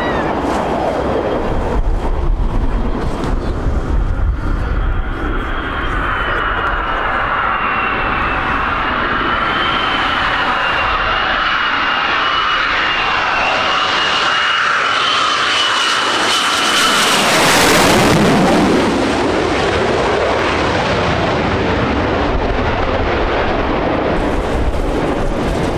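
Lockheed Martin F-22 Raptor's twin F119 turbofans on landing approach: a high, slightly wavering whine over a jet rumble that builds as the fighter nears. It is loudest as the jet passes, about 18 seconds in, and the rumble carries on after.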